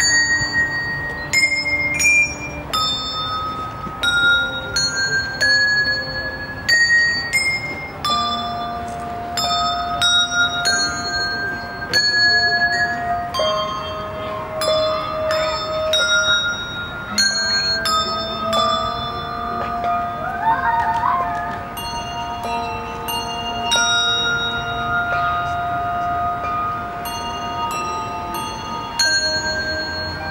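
A small handbell ensemble playing a piece: handbells struck one after another in a melody, each note ringing on, with some low notes held for several seconds under the tune.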